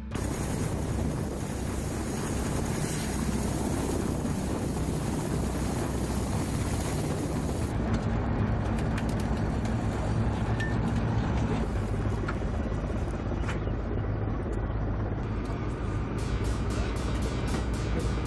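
Kamov Ka-52 Alligator coaxial-rotor attack helicopter running: a steady rush of turbine and rotor noise over a low, even hum.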